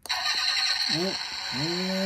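A toy push-button engine start/stop switch pressed, setting off its recorded engine-start sound from a small built-in speaker. The engine noise begins abruptly and runs on steadily.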